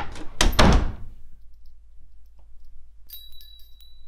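Interior door shut with a few heavy thuds in the first second. About three seconds in, the metal lever handle's latch clicks, with a brief high metallic ring.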